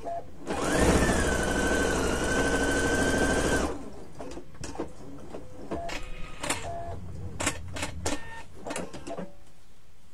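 Husqvarna Viking electric sewing machine stitching a seam at speed for about three seconds. Its motor whine rises quickly, holds steady, then stops. Afterwards comes a run of short clicks and taps as the fabric is handled at the needle.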